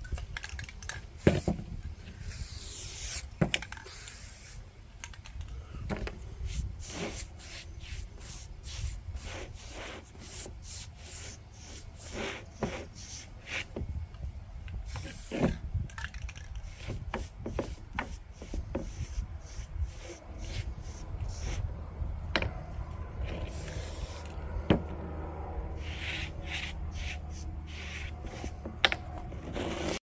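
Aerosol spray paint cans being shaken, the mixing ball rattling in quick clicks, with a few short hisses of paint sprayed onto wood.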